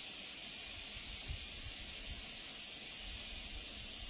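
Steady background hiss with a faint low rumble. No distinct sound events.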